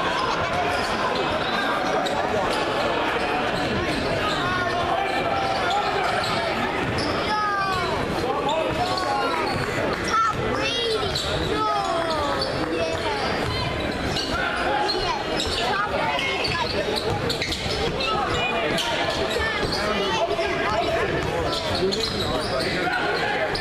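Live gym sound of a basketball game: the ball dribbling on the hardwood floor, sneakers squeaking, and steady crowd chatter echoing in a large hall, with a burst of squeaks about halfway through.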